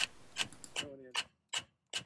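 Hand tool on the Land Cruiser FJ40's front driveshaft flange: a row of short metallic clicks and knocks, about two or three a second, some with a brief ring, as the burred driveshaft is worked back into place without a no-bounce hammer.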